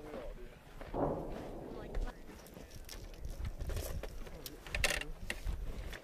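Linked machine-gun ammunition belts being handled: the metal cartridges and links clink and rattle in many short sharp clicks, loudest in a cluster about five seconds in. Indistinct voices and a low wind rumble sit underneath.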